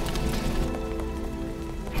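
Fire crackling, a steady hiss with small ticks, under background music with a few held notes.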